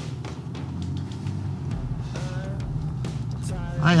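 Land Rover engine and road noise heard from inside the cabin while driving slowly: a steady low drone. A man's brief 'Hiya' comes at the very end.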